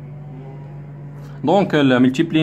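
A steady low background hum, then a man's voice speaking about one and a half seconds in.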